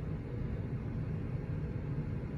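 Steady low rumble of room background noise, with no modem tones or clicks.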